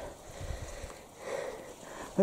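Two soft breaths about a second apart from a tired cyclist, over a low rumble.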